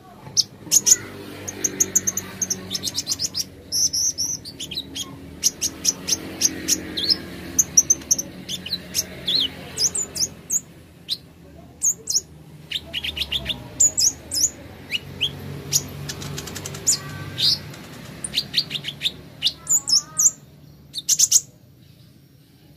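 Kolibri ninja (Van Hasselt's sunbird) calling: a busy run of sharp, high chirps and quick twittering notes, coming in rapid clusters with short gaps.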